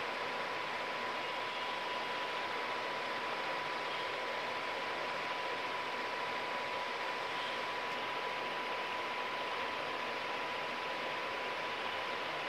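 Spinning 3D hologram LED fan display, its rotor blades giving a steady, even whoosh with a thin, steady whine running through it.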